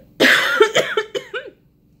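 A woman coughing into her hand in a short fit: one long cough, then a run of quicker, smaller coughs that stop about a second and a half in. Her throat had suddenly become irritated.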